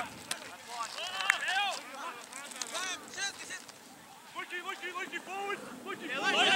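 Several players' voices shouting short calls to one another during play, overlapping on and off, with a lull around the middle.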